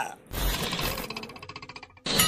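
A fast, even rattle of about a dozen strikes a second, fading away over a second and a half.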